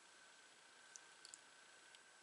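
Near silence: room tone with a few faint, small clicks, one about a second in, a quick pair just after, and one more near the end.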